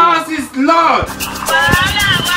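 A loud, drawn-out voice, then about a second in a song comes in, with a steady beat and a singing voice.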